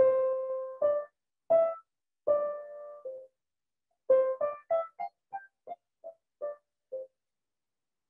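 Grand piano playing a single-line melody legato, with arm weight sunk to the bottom of the key bed for a full tone. A few slow notes, one of them held, are followed after a short pause by a quicker run of shorter notes that grows softer.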